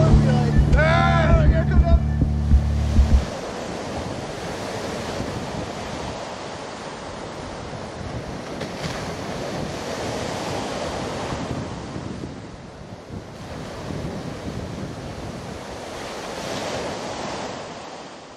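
Slushy, half-frozen ocean surf washing in at the shoreline: an even rushing that swells and eases. Background music plays under it and stops about three seconds in.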